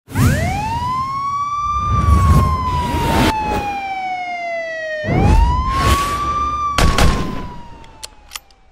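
Intro sound effect built around a siren wail, rising quickly and then falling slowly, twice, layered with whooshing hits and deep booms. The wail fades out near the end.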